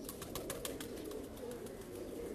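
Pigeons cooing faintly and low, with a quick run of light clicks in the first second.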